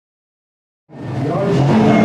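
Silence, then rally car engines running at low revs fade in about a second in.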